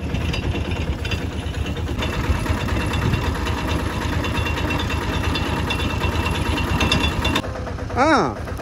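A small engine running steadily with a rapid, even pulse, as used to drive a roadside sugarcane juice crusher's geared rollers. A faint high whine runs alongside from about two seconds in, and the running cuts off abruptly about half a second before the end.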